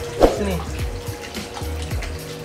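Water splashing and sloshing in a fish pond as a hand stirs and slaps the surface, luring a surface-feeding arowana up to the hand.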